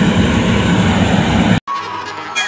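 Riello R40 G10 oil burner firing in open air: a loud, steady rush of flame and blower fan, which cuts off suddenly about one and a half seconds in.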